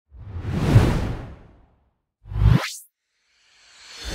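Whoosh sound effects for an animated logo intro: a swelling whoosh in the first second and a half, a short whoosh rising in pitch a little after two seconds, and another starting to swell near the end.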